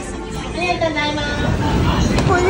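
A person speaking briefly over a steady low background hum.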